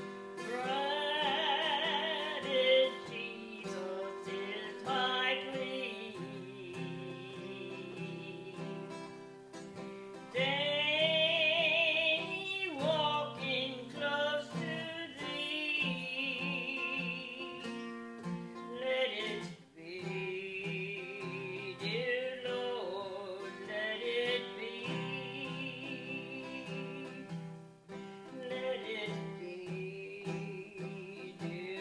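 Acoustic guitar played in steady chords, accompanying a woman singing with a strong vibrato in long phrases with short breaks between them.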